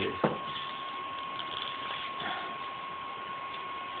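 Glass beer bottles clinked together once in a toast, a sharp knock about a quarter second in, followed by quiet room noise under a steady electronic tone.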